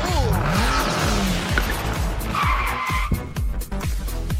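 Electronic intro music with a steady beat, overlaid with cartoon whoosh sound effects: swooping rises and falls in pitch in the first second, and a short held high tone about two and a half seconds in.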